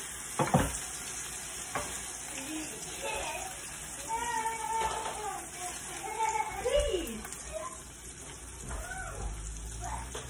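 Hamburger patties with cheese on top sizzling steadily in a frying pan, with a couple of sharp knocks from a metal utensil against the pan near the start.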